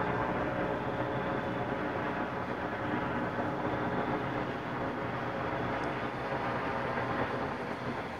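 A steady, low engine hum that holds level throughout, with no sudden sounds.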